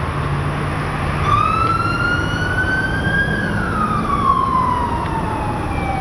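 Police siren wailing once, rising slowly in pitch and then falling for a longer stretch, over a steady rumble of vehicle engines.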